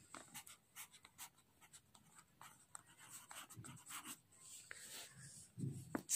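Pencil writing a word by hand on a workbook page: faint, irregular scratching strokes.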